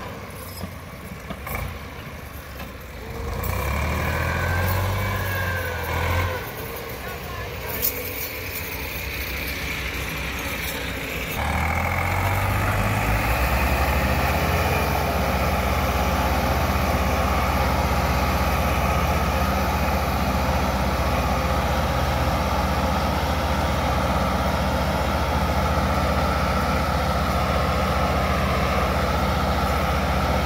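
Massey Ferguson tractor diesel engines labouring under heavy load as a 385 tows a stuck tractor and loaded sugarcane trolley by chain. About eleven seconds in the engine sound jumps to a loud steady drone that holds to the end, with a short rise and fall in pitch soon after.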